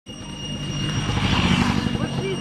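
A motorbike with two riders passing close by and pulling away, its small engine running with a rapid pulsing note and tyre noise that swells to a peak about one and a half seconds in.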